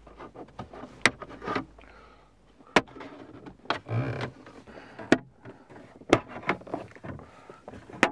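Plastic dashboard trim panel being prised up with a plastic trim tool: scraping and rustling, with several sharp clicks about a second apart as its retaining clips pop free.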